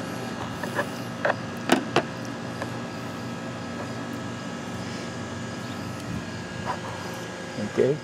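A few short, light clicks and taps from handling a wiper blade and its packaging, bunched in the first two seconds, over a steady background hum.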